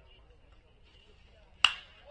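Baseball bat hitting a pitched ball: one sharp crack with a brief ring, about a second and a half in.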